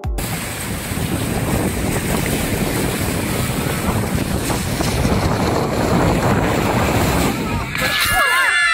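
Water rushing over a glass slide beneath an inflatable raft as it slides down, with wind buffeting the microphone. The steady rush breaks off just before the end.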